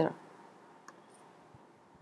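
A single faint computer mouse click about a second in, against quiet room tone, just after a spoken word ends.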